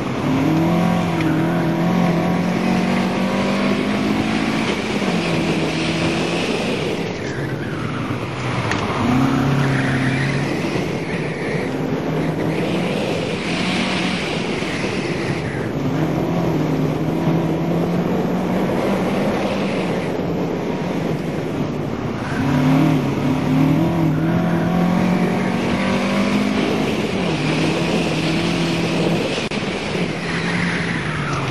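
Mazda MX-5 Miata's four-cylinder engine on an autocross run, heard from inside the car, its pitch rising and falling again and again as the throttle opens and closes through the course. The tires squeal at times through the turns.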